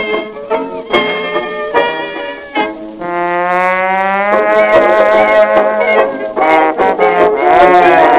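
1921 acoustic-era jazz dance-band recording on a Victor shellac 78 playing a fox trot, with brass and reeds. About three seconds in, a brass note slides down and is held, and near the end a slide rises.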